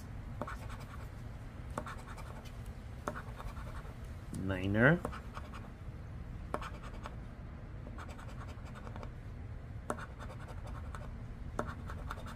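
A coin scratching the latex coating off a paper scratch-off lottery ticket in short, scattered strokes.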